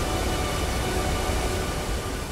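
Steady rushing of water pouring from dam spillways, with a deep rumble, slowly fading under a few faint held music notes.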